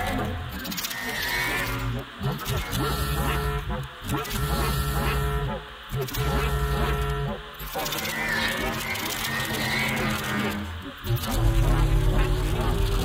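Experimental glitch-noise electronica: dense layered electronic textures over sustained low bass tones, with the sound cutting out abruptly for a moment every couple of seconds.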